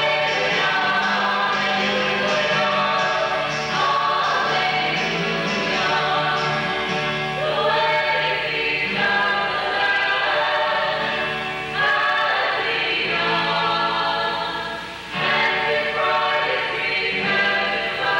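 A choir singing a Christian hymn in long, held notes, the phrases changing every few seconds.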